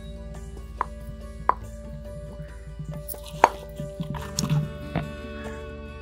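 Stone pestle knocking and grinding garlic and chillies into a paste in a stone mortar: a handful of sharp, irregular knocks, the loudest about halfway through. Soft background music runs under it.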